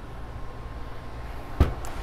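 A door being opened: a single sharp knock of the latch about one and a half seconds in, over a low steady hum.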